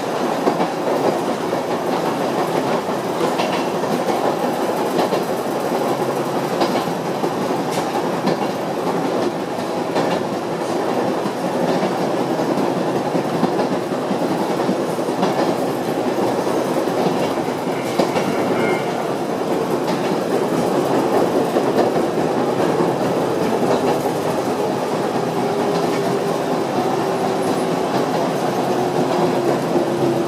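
Yoro Railway electric train running along the line, heard from inside its rear cab: a steady rumble of wheels on rail with light clicks over the rail joints. Near the end a faint whine sinks slightly in pitch.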